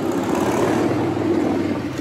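Street traffic close by, with motorcycles, scooters and cars running past in a steady engine hum that eases off near the end.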